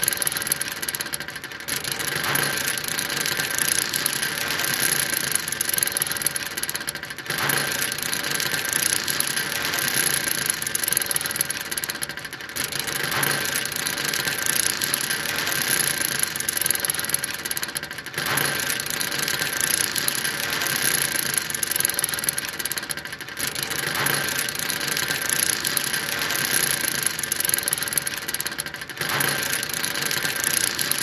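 A ship's anchor being lowered into the water: a steady mechanical running and rattling mixed with rushing water, with a thin steady whine through it. The same few seconds repeat, with a brief dip about every five and a half seconds.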